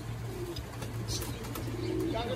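Racing pigeons cooing softly in the loft over a low steady hum.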